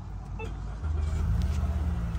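A Mitsubishi Outlander's engine starting about a second in and settling into a steady low idle, heard from inside the cabin.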